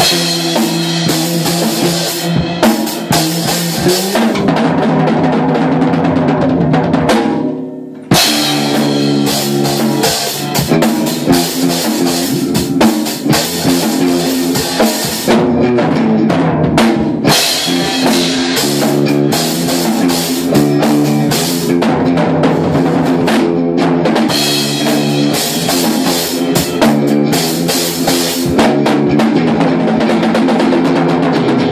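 Live guitar-and-drums jam in a garage-rock style: an amplified guitar playing a riff over a drum kit's bass drum, snare and cymbals. The band stops for a moment about eight seconds in, then comes back in together.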